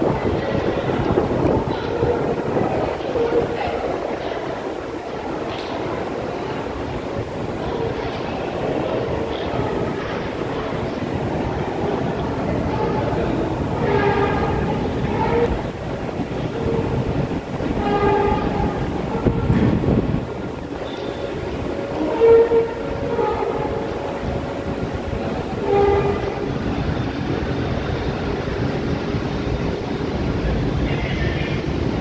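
Metro train sound carrying through an underground station: a steady rumble with short pitched tones now and then.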